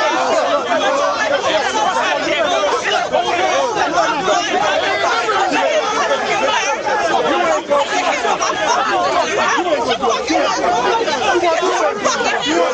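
Several people talking over one another: continuous, overlapping chatter with no clear words.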